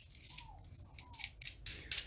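Light metallic clicks and scrapes as the steel tip and threaded nut of a Handskit digital soldering iron are handled, the loudest just before the end. Two faint short squeaks falling in pitch come in the first half.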